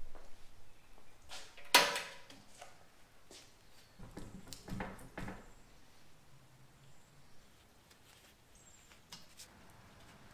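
Knocks and clanks of a steel tire carrier arm being handled and fitted at the rear bumper's hinge, with one loud metal knock a little under two seconds in, a cluster of knocks around the middle, and fainter clicks after.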